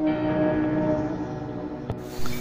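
A bell-like ringing tone slowly dying away, with a single sharp click near the end.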